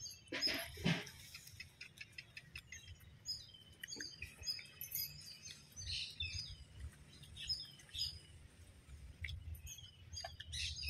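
Small birds chirping repeatedly in the background, with a couple of brief louder sounds about half a second to a second in, amid the soft sounds of people eating rice by hand.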